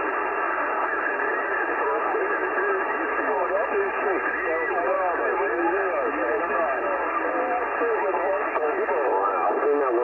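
Many single-sideband voices calling over one another through a transceiver's speaker on 27.385 MHz lower sideband: a CB skip pileup of distant European stations. It is a steady, thin, muddled radio babble with no gaps, the voices too jumbled to make out.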